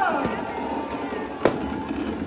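A firecracker bang, one sharp crack about one and a half seconds in, over a background of voices and music.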